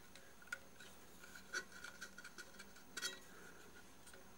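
A few faint, small metallic clicks, about three in all, from fingers handling the contact-breaker points, spring and capacitor on the base plate of a British Anzani outboard's flywheel magneto.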